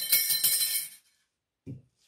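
A loose steel part dropped or set down hard: one sharp metallic clink followed by about a second of bright ringing and jingling that dies away.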